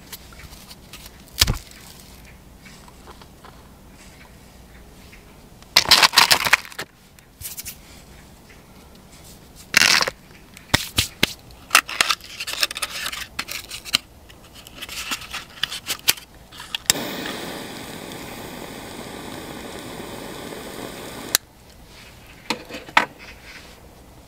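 Handling sounds of compressed sawdust briquette logs and a small metal wood stove: a knock, bursts of scraping and rustling, and light clicks, with a steady hiss lasting about four seconds that cuts off sharply.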